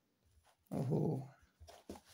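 A short voiced vocal sound about a second in, lasting about half a second and quieter than the surrounding talk, followed by a few faint clicks near the end.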